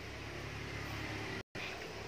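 Steady low background hum with a faint noise haze, broken by a brief, sudden dropout to total silence about one and a half seconds in.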